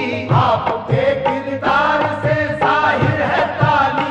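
Devotional qawwali-style song: male voices singing a melodic line over a steady drum beat.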